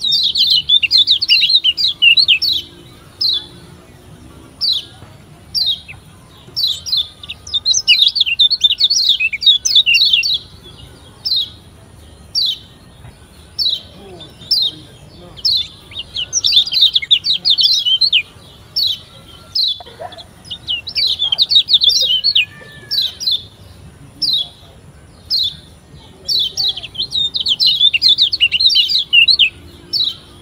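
Lombok yellow white-eye (kecial kuning) chirping: short high calls about once a second, broken every few seconds by bursts of rapid twittering. It is a lure call, played to set other white-eyes singing.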